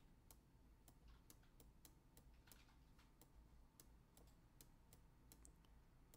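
Faint, irregular clicks and taps of a stylus on a pen tablet during handwriting, about two or three a second, over near-silent room tone.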